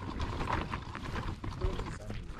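Footsteps on a stone and cobbled path, an irregular run of short scuffing clicks.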